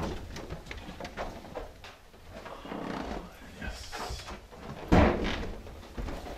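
Light steps and small knocks, then a door shutting with a loud thud about five seconds in.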